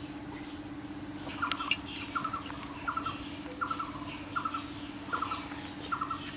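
A bird calling over and over, a short trilling chirp repeated about every three-quarters of a second, starting about a second and a half in, over a steady low hum.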